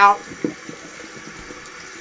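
A steady, even hiss, with a man's voice finishing a word right at the start.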